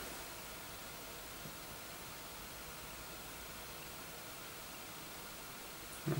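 Faint, steady hiss of room tone and recording noise, with no distinct sound events.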